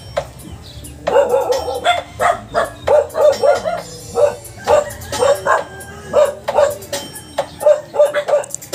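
A dog barking repeatedly in quick runs of short barks, starting about a second in, over background music.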